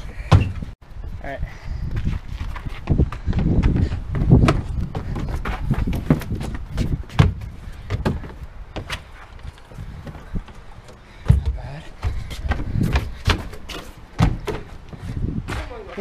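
Parkour runners' hands and feet striking wooden decking and plywood walls while vaulting: a string of irregular knocks and thuds, with low rumble underneath.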